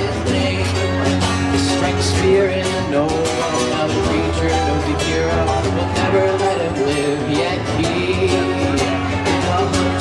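Live amplified band playing through a PA: acoustic guitar strumming over a steady low bass and drum kit hits, in an instrumental passage with no sung words.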